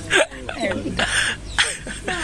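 An elderly woman and a man laughing heartily together in short, breathy, hiccup-like bursts, the loudest just after the start.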